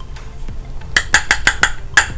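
Quick sharp tapping on a loose-powder makeup jar, about six taps a second, starting about halfway in.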